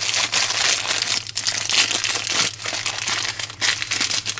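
A shiny foil blind bag being torn open and crinkled in the hands, a continuous irregular crackle.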